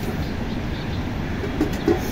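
Steady low rushing background noise, with two soft thuds near the end from hands kneading dough in a steel bowl.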